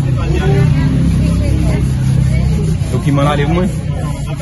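Voices talking, over a steady low background rumble like road traffic.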